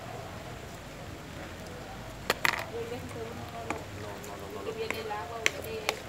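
A metal spoon stirring diced avocado and onion in a bowl, clinking against the bowl's side a few times, the sharpest clink about two seconds in.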